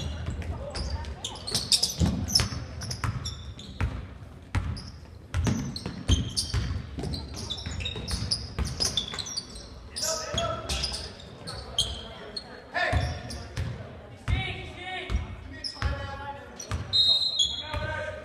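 Basketball game sounds in a school gym: a ball dribbled on a hardwood floor and sneakers squeaking, with players and spectators shouting.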